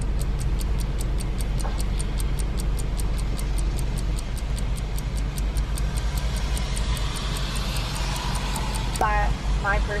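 A ticking-clock sound effect, light even ticks at about four a second, stopping about nine seconds in. Under it runs a steady low hum inside the car.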